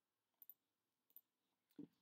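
Near silence with a few faint computer mouse clicks, about half a second and a little over a second in, and a brief soft sound just before the end.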